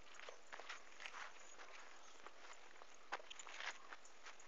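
Footsteps and rustling through dry leaves and undergrowth: irregular faint crackles and crunches, with a sharper snap about three seconds in.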